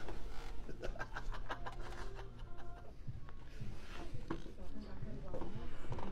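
Faint background speech in a small treatment room, with light rustling and small clicks as a patient is positioned on a padded vinyl chiropractic table.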